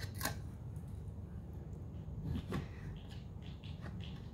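Faint handling sounds as a stack of trading cards is slid out of a clear hard-plastic case. There are two light clicks, one just after the start and one about two and a half seconds in.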